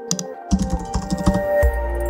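Computer keyboard typing sound effect: a short double click, then a rapid run of key clicks from about half a second in, over electronic background music whose bass comes in near the end.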